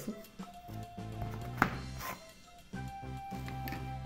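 Background music with steady plucked notes. About one and a half seconds in, there is a single sharp snip of scissors cutting through braided cord.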